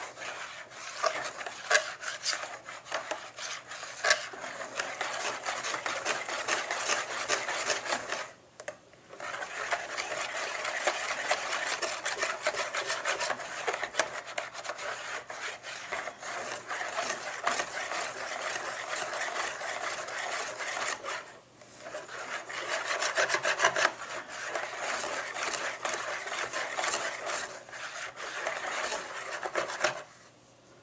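Wire whisk beating thin crepe batter in a bowl: a fast, steady swishing with the wires clicking and scraping against the bowl. It breaks off briefly twice, a little over a quarter of the way in and about two-thirds through, and stops at the very end.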